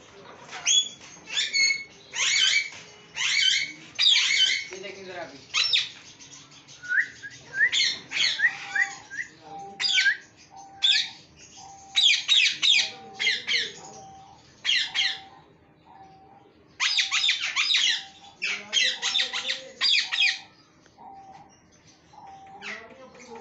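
Caged parrots squawking: shrill, high calls repeated rapidly in several bursts.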